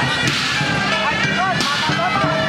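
Parade music from marching performers, with sharp cracking hits about half a second in and again near the end.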